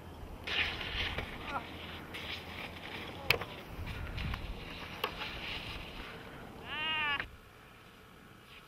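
Outdoor mountainside noise with a few sharp clicks, and near the end a short high-pitched yelp from a person that rises and falls in pitch before the sound cuts off suddenly.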